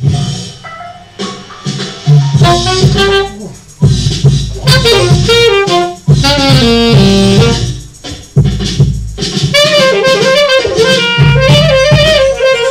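Saxophone playing a melody in short phrases, with brief breaks between them.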